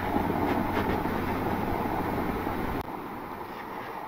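Steady background noise: an even hiss with a low hum underneath, dropping in level a little before three seconds in.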